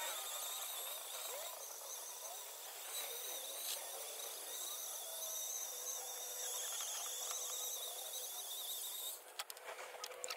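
Steady faint whine and hiss of a cordless tool's wire brush wheel scouring old caked grease and dirt off steel wheel-lift pivot plates, stopping about nine seconds in.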